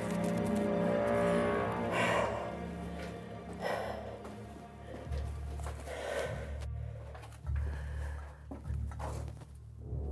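Low, dark film-score music with sustained tones. Over it, a person breathes through a gas mask, one breath every two seconds or so, fading toward the end.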